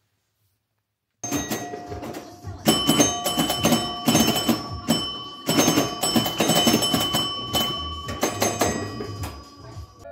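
Pinball machine in play: about a second in, a rapid run of mechanical clicks starts, mixed with ringing bell and chime tones.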